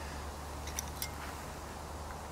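Quiet draw of a PSE Decree compound bow: two faint small clicks near the middle over a steady low background hum, with no loud string or cam noise.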